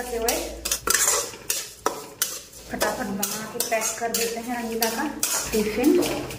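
A steel spatula scraping and clanking against a metal kadhai, in quick irregular strokes, as vermicelli (sevai) is stirred and fried.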